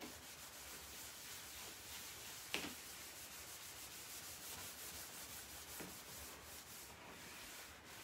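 Cloth rag rubbing back and forth over a solid oak tabletop, wiping back wet white gel stain along the grain; faint and steady, with a small tick about two and a half seconds in.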